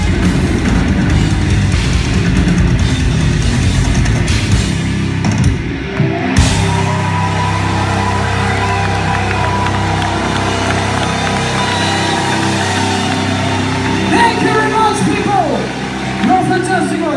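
Heavy metal band playing live at concert volume: drums, bass and distorted guitars driving hard, then a big hit about six seconds in and a long held chord ringing out as the song ends. Near the end the singer's voice wails over it.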